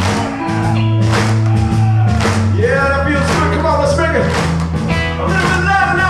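Live blues-rock band playing with electric guitars, bass and drums keeping a steady beat, and a man singing over it.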